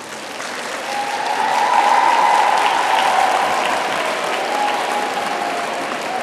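Large audience clapping, swelling to its loudest about two seconds in and then slowly tapering off.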